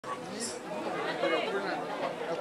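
Background chatter of many guests talking at once in a large hall.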